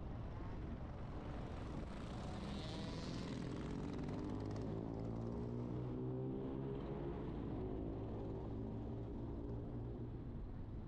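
Car driving along a city street: steady road and engine noise, with a pitched engine drone that grows stronger about halfway through.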